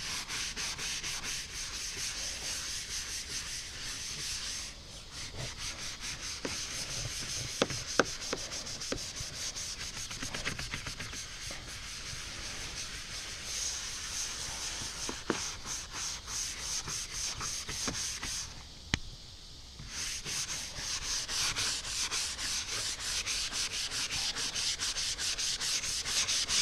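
A stiff plastic scrub brush scrubbing a fiberglass boat deck sprinkled with Bar Keepers Friend cleansing powder, in quick back-and-forth strokes. There is a short break about five seconds in and another about three quarters of the way through, with a few light clicks.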